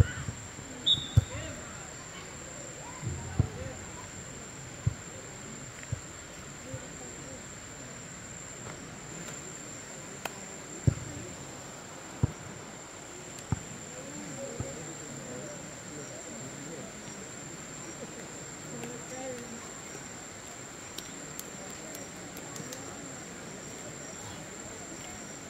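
Steady high-pitched insect chirring held throughout, over open-air ambience with faint distant voices. About a dozen scattered dull thumps stand out, mostly in the first half.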